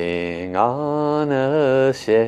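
Devotional chanting: a voice singing soul-language syllables ("lu la li") in a slow melody. A short note comes first, then a long held note from about half a second in, wavering slightly near the end.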